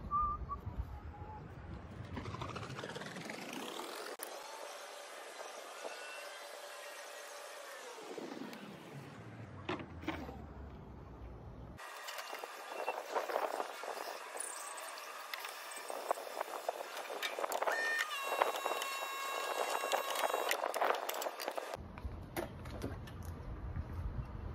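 Water from a garden hose running into the tank of a backpack pump sprayer while a liquid grub-control pesticide is mixed, heard in several edited takes with abrupt cuts between them.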